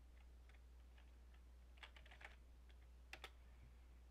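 Faint computer keyboard typing over a low steady hum: a few scattered keystrokes, with short runs at about two seconds and just after three seconds in.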